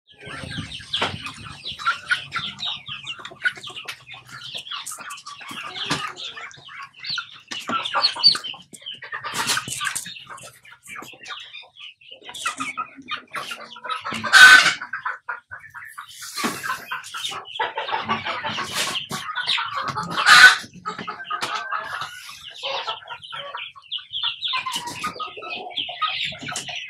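A flock of Rhode Island Red hens clucking and calling as they feed on coconut pulp, with two much louder calls partway through.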